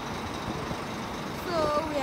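Steady low outdoor rumble without any clear pitch, with a woman's voice starting near the end.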